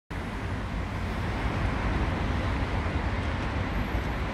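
Steady city traffic noise: an even rumble from surrounding streets, strongest in the low end, with no distinct events.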